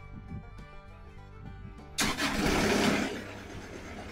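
Bluegrass-style background music; about halfway in, a sudden loud burst of engine noise that eases after about a second into steady running: the bandsaw mill's engine starting up.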